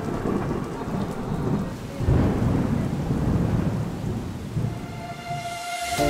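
Thunder rumbling over steady rain, with a loud roll that swells about two seconds in and slowly fades.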